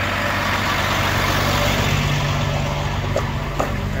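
Semi tractor's diesel engine idling steadily under a steady hiss, with two light knocks near the end.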